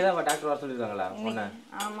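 Metal spoon scraping and clinking against a stainless-steel kadai while chopped onions are stirred, with a sharp clink just after the start and another near the end.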